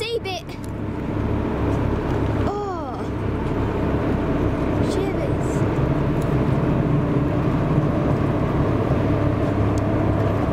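A vessel's engine running with a steady low drone, with a short, pitched, voice-like sound about two and a half seconds in.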